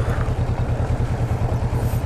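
Kawasaki Vulcan S 650 parallel-twin engine idling at a standstill, a steady low rumble with an even pulsing beat.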